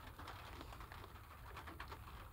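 Faint, scattered raindrops ticking irregularly on a car's windshield and hood, heard from inside the car over a low steady rumble.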